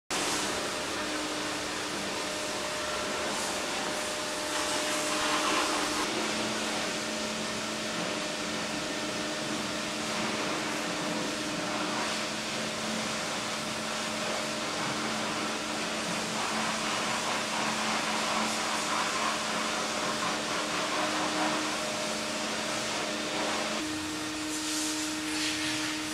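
A steady whooshing noise with a faint low hum, like a running motor-driven appliance, with no breaks.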